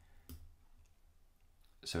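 Computer mouse clicks: one sharp click about a third of a second in, followed by a few fainter ticks. A man's voice starts a word at the very end.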